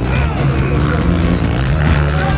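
Music playing loudly, mixed with the engines of motocross dirt bikes running on the track.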